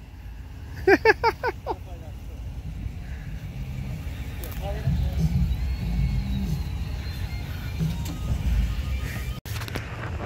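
Ram 1500 pickup's engine pulling under load as it drives through a muddy puddle: a low rumble that builds over several seconds and cuts off suddenly near the end.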